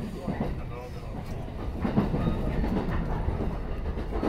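JR West 223 series 1000 electric train heard from inside the car as it runs along, a steady low rumble with the wheels clacking over the rails. The sharpest knock comes about halfway through.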